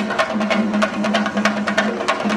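Chendamelam: chenda drums beaten with sticks together with elathalam, small brass hand cymbals, clashing in a fast, even rhythm of several strikes a second.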